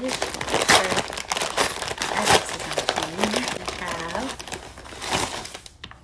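Brown paper mailer bag crinkling and rustling as it is handled and opened by hand, a dense run of crackles.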